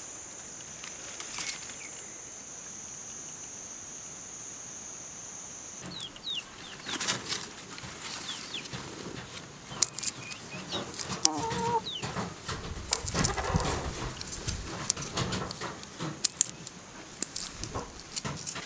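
A steady high-pitched insect drone for about the first six seconds; then chickens clucking, with short high chirps, and sharp snaps and rustles as green soybean pods are pulled off their stems by hand.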